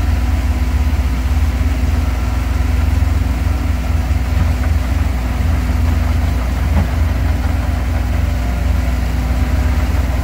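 Diesel engine of a Caterpillar 943 crawler loader running steadily with a deep, low sound as the machine works loose earth.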